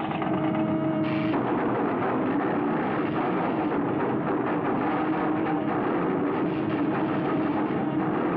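Cartoon sound effect of refrigeration machinery breaking down: a steady hum under a dense, continuous crackling rattle. It is the sign of the cooling system failing. A higher tone over it stops about a second in.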